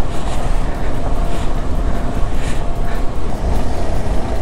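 KTM adventure motorcycle riding over a rough, stony off-road track: the engine runs steadily under a loud low rumble of wind and tyre noise.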